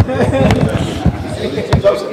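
Background voices and chatter with a few sharp knocks from handheld microphones being handled and bumped together as they are passed into one person's hands.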